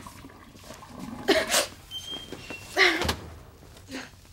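A crying girl sniffling into a paper towel while drying her eyes: two short, noisy snuffles about a second and a half apart, the second with a soft bump.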